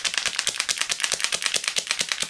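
Small plastic Kickstick tube of drink-powder crystals shaken quickly by hand, a fast, even rattle of granules against plastic.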